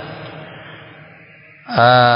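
A short pause in a man's lecture: a fading echo and low background hiss, then his voice starts again, drawn out in pitch, about a second and a half in.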